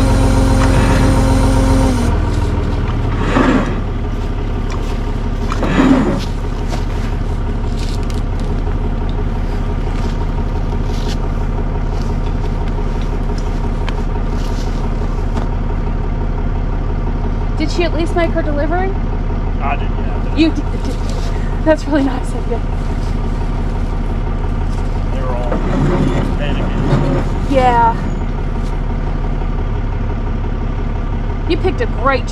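Tow truck engine idling steadily, with a higher steady whine that cuts off about two seconds in. Voices are heard faintly at intervals in the second half.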